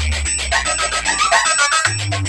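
Electronic dance music played loud through a large DJ speaker wall during a sound test. The heavy bass drops out for most of the moment, leaving a high melody over a busy treble beat, and comes back in near the end.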